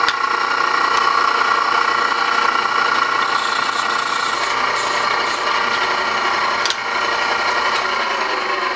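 Drill press running with its bit pressed against a hardened, heat-treated 1095 and 15N20 steel knife tang, spinning and rubbing without cutting because the steel is too hard for the bit. A high-pitched whine comes and goes in the middle.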